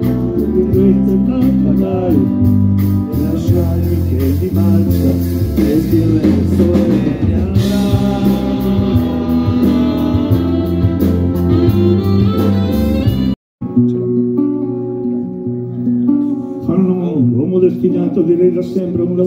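A live band playing an instrumental passage: guitar, bass guitar and drum kit. About 13 seconds in, the sound cuts out for a moment and returns with much less bass.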